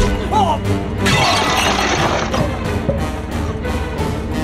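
Dramatic score playing, and about a second in a loud shattering crash that lasts about a second over the music.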